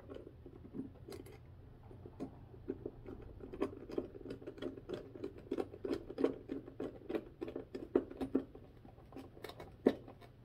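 Small screwdriver turning a terminal screw on a lamp socket: a run of small irregular clicks and scrapes of the blade in the screw head, busier through the middle, with one sharper click near the end.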